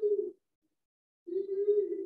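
A man's voice held in two long, steady hums close to the microphone, the hesitation sounds of a preacher finding his place in his notes. The first tails off just after the start and the second begins past the middle.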